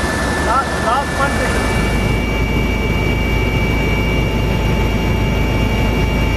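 Helicopter turbine engine running: a steady high whine over a hiss, with a low rumble that comes in about a second in. A few short shouts sound in the first second.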